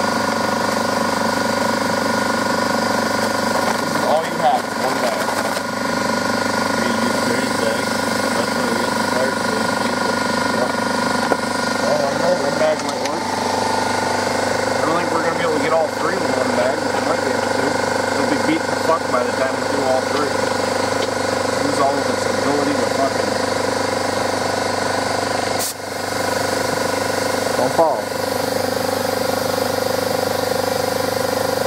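Air compressor running steadily at a constant pitch to feed a sandblaster, a continuous drone with no change in speed.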